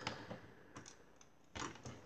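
Plastic LEGO Bionicle and Hero Factory parts clicking faintly as the figure's arms are folded out by hand, with a louder knock about a second and a half in.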